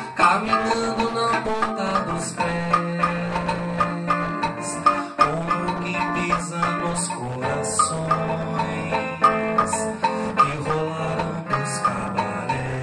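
Live acoustic Brazilian-style trio playing: acoustic guitar picking with hand percussion giving sharp accents, and a male singer holding long wordless notes into the microphone.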